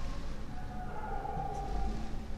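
Whiteboard marker squeaking as it draws short strokes on the board: a thin squeal from about half a second in, lasting over a second, over a steady low hum.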